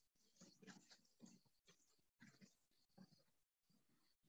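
Near silence: quiet room tone with a few faint, brief sounds scattered through it.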